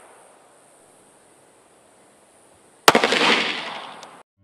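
A single shot from an FN Five-seven pistol firing a 5.7x28mm round, nearly three seconds in: one sharp crack followed by about a second of fading echo.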